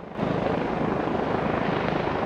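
Helicopter rotors running steadily with a fast, even chop, coming in a moment after the start.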